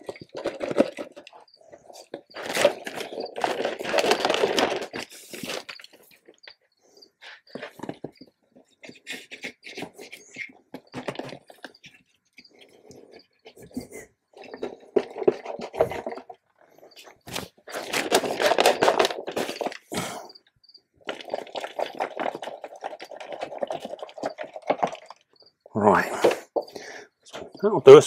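Loose soil substrate poured from a small container into a glass terrarium: several separate bursts of rustling and trickling a few seconds each, with scattered sharp clicks.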